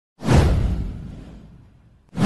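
A whoosh sound effect with a deep low rumble under it, starting suddenly and fading out over about a second and a half.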